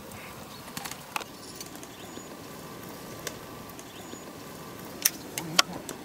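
A few short, sharp clicks over a steady outdoor background; the two loudest come about half a second apart near the end.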